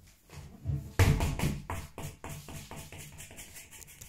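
Inflatable gym ball dropping to the floor and bouncing to rest: a loud first thump about a second in, then a quick run of smaller bounces that grow closer together and fade.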